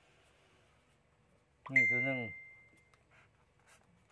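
A single high ding, a clear bell-like tone that starts sharply a little under two seconds in and fades away over about a second, heard together with a short spoken phrase; otherwise near silence.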